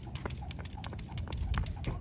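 Skipping rope in use on concrete: a quick, slightly uneven run of sharp slaps and clicks, several a second, as the cord strikes the ground and the jumper's shoes land with each turn.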